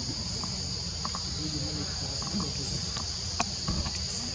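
Steady high-pitched chorus of insects over a low rumble, with one sharp click a little before the end.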